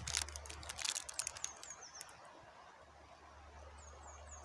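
Plastic biscuit-packet wrapper crinkling as it is handled and opened: a quick run of crackles over the first two seconds that then dies away. A bird chirps a few times, high and short.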